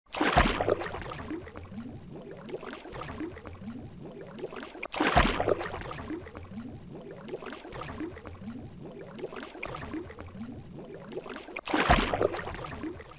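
Water sound effect: a splash followed by gurgling, bubbling water. The splash comes three times: at the start, about five seconds in, and near the end.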